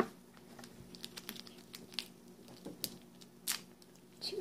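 Faint crinkling of a Warheads candy's plastic wrapper being handled, heard as scattered small clicks and crackles.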